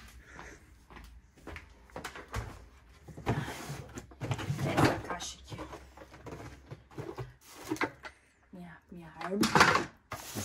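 A cardboard shoebox being handled: the lid is taken off and items are rummaged inside, giving an irregular run of short knocks, scrapes and rustles.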